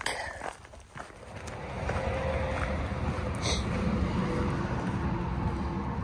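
Low, steady rumble of a motor vehicle's engine and tyres on a road. It builds over the first couple of seconds, then holds.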